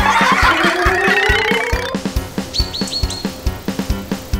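Background music with a steady beat, overlaid with a rising glide sound effect during the first two seconds. About two and a half seconds in come four quick, high chirps like a bird's tweet.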